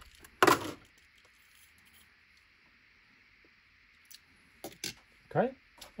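Blister-card packaging of a die-cast toy car being handled: a short, loud plastic crackle about half a second in, then a few seconds of near quiet, then a few light clicks near the end as the small car is set down on the tabletop.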